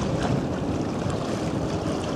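Wind on the microphone and water rushing past a boat under way, a steady low noise.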